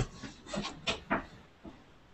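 A quick run of five or so short scrapes or rustles, the last and faintest about a second and a half in.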